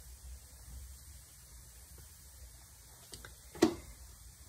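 Faint low electrical hum, with one sharp knock about three and a half seconds in.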